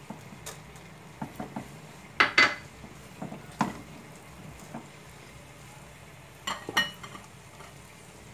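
A spatula knocking and scraping against a metal saucepan while stirring sautéed onion and grated cheese: scattered clinks, the loudest pair about two seconds in and another cluster toward the end.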